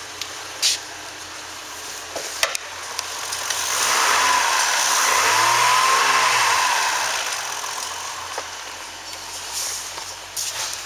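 2002 Chevrolet Trailblazer's 4.2-litre inline-six idling, a steady rushing hum. It swells loud for a few seconds in the middle as the mic passes over the open engine bay, then fades again, with a couple of light knocks early on.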